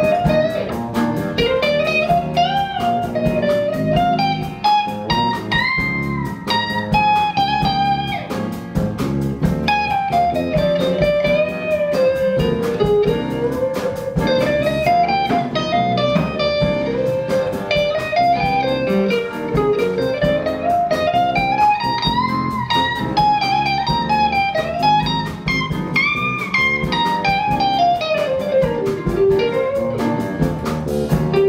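Live band instrumental: an electric guitar plays a lead melody with smoothly bent, gliding notes over piano, electric bass and drum kit.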